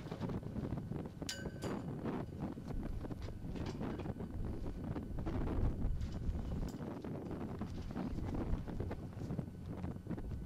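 Wind buffeting the microphone as a steady low rumble. A couple of sharp metallic clinks ring out about a second in, from the flagpole's halyard clips as the flag is fastened on.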